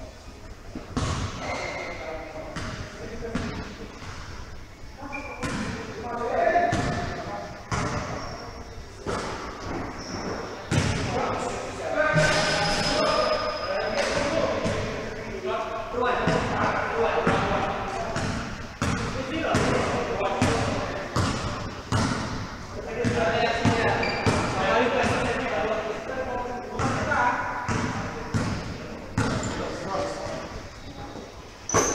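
Basketball being dribbled and bounced on the court during a pickup game, with repeated thuds and the voices of players calling out, echoing in a large indoor gym.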